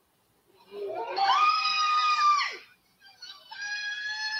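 Two long, high-pitched screams. The first rises slightly and breaks off with a sharp drop about two and a half seconds in; the second begins a little lower and is held steady near the end.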